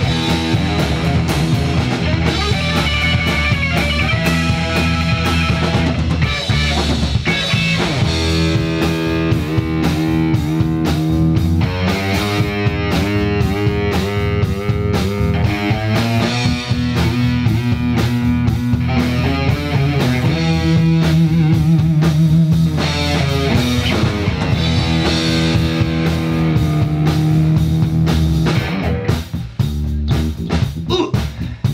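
Live rock band playing an instrumental passage on electric guitar, electric bass and drum kit. The music dips in loudness near the end.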